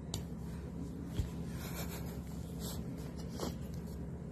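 Faint rustling and rubbing handling sounds, a few short scrapes spread through, with a soft low thump about a second in, over a low steady hum.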